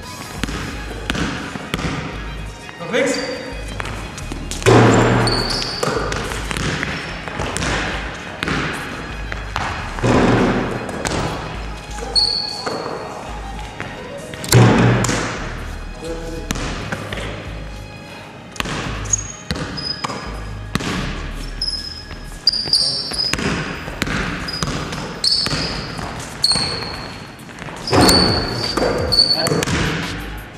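A basketball bouncing on a hard indoor gym floor during a game, with sneakers squeaking and players calling out now and then, all echoing in a large sports hall.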